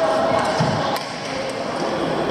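A badminton racket strikes a shuttlecock with a sharp crack about a second in, echoing in a large hall with wooden courts, over voices from the players.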